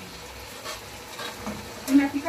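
Chunks of boiled meat sizzling in a pot of hot, bubbling dark sauce, stirred with a wooden spoon, with a few light knocks and one sharp clack just before the end.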